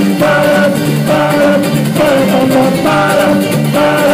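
Live ukulele band music: ukulele strummed over a drum kit, with singing.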